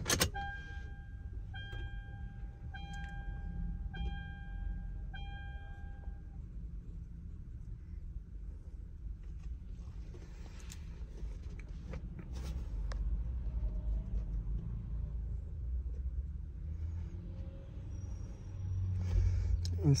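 Toyota Land Cruiser's dashboard warning buzzer beeping five times, about one beep a second, each about a second long, then stopping about six seconds in, with the ignition switched on. A low rumble runs underneath, with a few faint clicks later.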